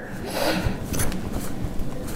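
Cotton fabric rustling and rubbing as hands turn a sewn facing right side out and push out its corner, with a few small clicks.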